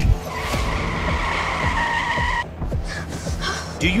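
Car tyres screeching for about two seconds, then cutting off suddenly, over a low steady drone.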